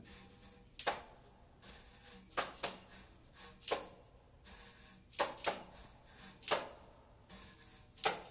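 Solo tambourine-like jingle percussion opening a jazz number in 3⅔/4 time. Sharp jingling strikes fall in an uneven, repeating pattern, with quieter shaking between them.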